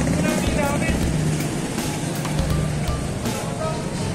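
Busy city street: motorcycle engines running close by, with voices of passers-by in the crowd.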